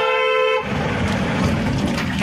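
A vehicle horn gives one short toot of about half a second. It is followed by the steady engine and road noise of a moving vehicle, heard from inside its cab.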